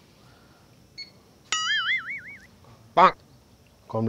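A comic 'boing' sound effect about one and a half seconds in: a sudden twang whose pitch wobbles up and down for about a second and fades. A man says a short word near the end.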